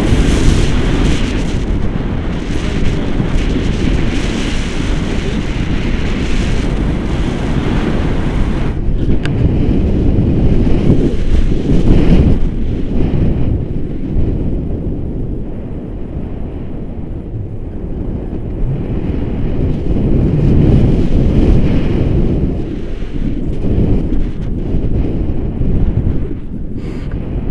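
Loud, gusting wind buffeting the microphone, with the noise heaviest in the low end; the hiss in the upper range falls away after about nine seconds.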